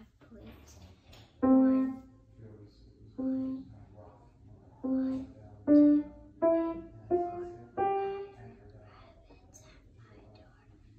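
Grand piano played one note at a time, slowly and unevenly: the same low note struck three times, then four notes climbing step by step, each ringing and fading.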